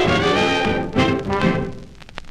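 A 1932 hot dance band with trumpet and trombone, played from a raw 78 rpm shellac transfer, plays its closing bars. It hits accents about a second in and again half a second later, then dies away near the end into the disc's surface hiss.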